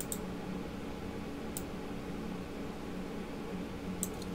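Quiet room tone: a steady low hum with a few faint clicks, one at the start, one about a second and a half in and a couple at the very end.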